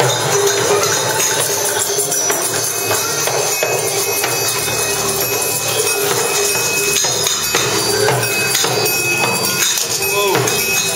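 Several tambourines and hand shakers are shaken at once by small children, a continuous jangling, rattling clatter with no steady beat.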